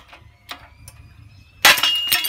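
A ceramic mug crushed in a hydraulic shop press: a few light clicks as the jack's pressure builds, then about one and a half seconds in the mug bursts with a loud sudden crack and a clatter of shards, with a faint ringing after it.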